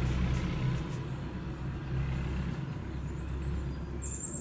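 A motor vehicle's engine running nearby as a steady low rumble that eases off slightly toward the end.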